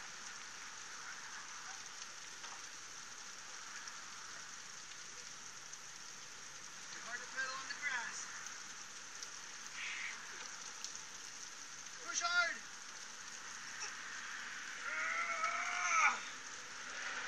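Water spraying from a kiddie car wash's pipe frame and falling on grass in a steady rain-like patter. A child's voice briefly calls out a few times: a little after 7 s, around 12 s and near the end.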